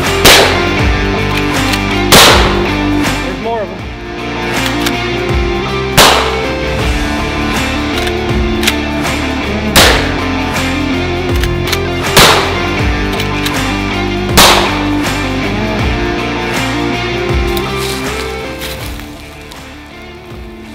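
Six lever-action rifle shots, sharp cracks spaced two to four seconds apart, over background music that fades near the end.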